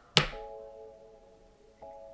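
A ringing, chime-like musical chord struck with a sharp attack and fading away, then struck again more softly near the end.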